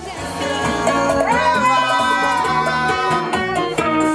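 Salsa music with guitar, and a voice singing a long held note that scoops up about a second in.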